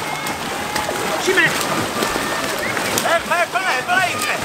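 Water splashing and churning as a boat crew paddles hard with hands and wooden paddles. Voices shout over it, with a quick run of calls near the end.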